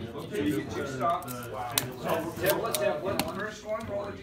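Indistinct talk with a few sharp clicks and taps from a tape measure and miniatures being handled on the gaming table.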